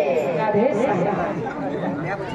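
Speech with overlapping chatter from many voices.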